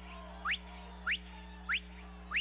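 A man whistling short, rising bird-like calls, about three in two seconds, imitating a little bird. A steady low hum runs underneath.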